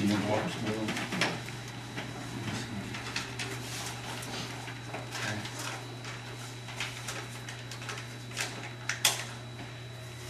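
Quiet meeting-room sounds: paper rustling and handling, with scattered small clicks and knocks and faint voices, over a steady low hum. The sharpest knocks come at the start and about nine seconds in.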